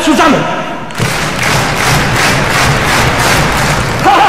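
A concert-hall audience stamping their feet on the floor in rhythm, a dense drumming of many feet with a low rumble, after a short burst of shouting voices in the first second.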